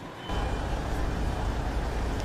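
Fire engines' diesel engines running steadily, a deep even hum that comes in a moment after the start.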